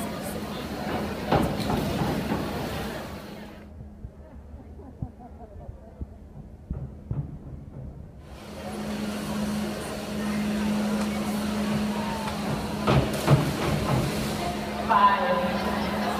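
Echoing chatter of spectators in an indoor pool hall over a steady low hum, with a sharp knock about a second in. The sound goes dull for a few seconds in the middle.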